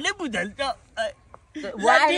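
People speaking in short, excited bursts of speech, with a brief pause about a second in.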